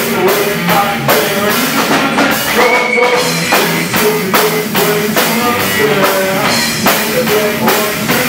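Live rock band playing: a drum kit keeping a steady beat under bass guitar, with a singer on vocals.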